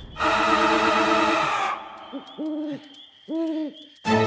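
An owl hooting twice, at about two and three and a half seconds in, each hoot rising, holding and then falling in pitch. Before the hoots, a sustained musical tone is held for about a second and a half and then stops.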